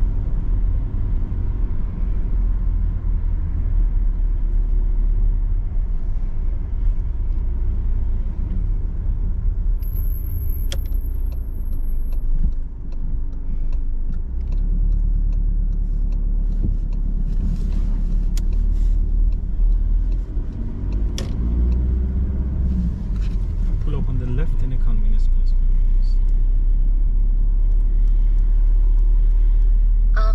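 Steady low rumble of engine and road noise inside a moving car's cabin.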